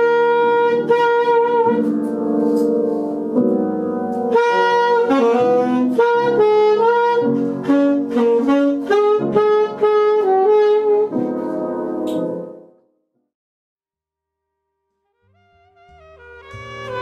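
Alto saxophone playing a melody over piano chords. The music cuts off about three-quarters of the way through, and after a short silence another passage fades in near the end.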